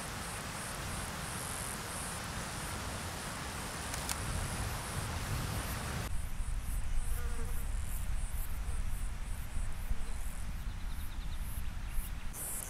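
Insects chirping in rapid, repeated high-pitched pulses over a steady low rumble; about halfway through, the background hiss drops away abruptly and the chirping continues in shorter, spaced pulses.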